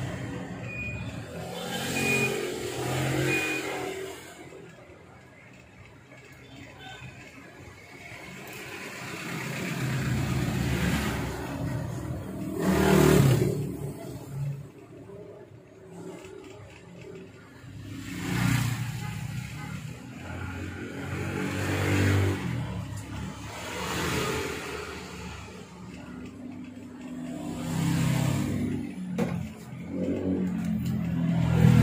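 Motor vehicle engines passing by, swelling and fading several times.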